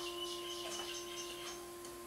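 Chord on a Technics digital piano, held down so its notes ring on, slowly fading.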